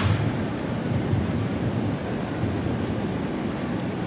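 Steady low rumble of a large indoor arena's ambience: crowd murmur from packed stands and hall noise. A sharp click right at the start and a fainter one about a second later.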